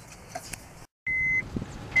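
Two short, high single-pitch electronic beeps from a car's dashboard electronics, under a second apart, near the end, after a brief dropout to dead silence; faint handling rustle and a small click before them.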